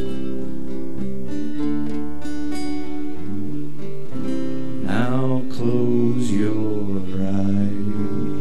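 Live acoustic string band playing an instrumental passage without vocals: strummed acoustic guitars with fiddle carrying sustained melody notes, which slide in pitch a few times past the middle.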